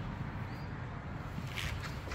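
Low, steady rumble of road traffic from a busy avenue outside, with a couple of short rustles near the end.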